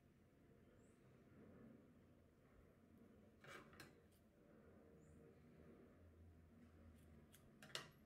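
Near silence: room tone with a few faint clicks about halfway through and again near the end.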